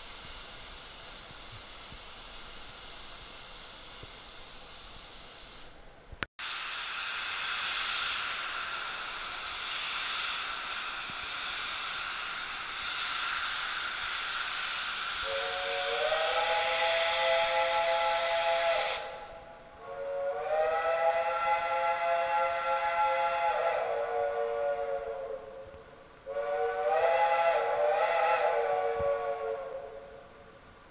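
Steam locomotive letting off a loud hiss of steam, then sounding its chime whistle, several notes together, in three long blasts. The second blast drops in pitch as it ends.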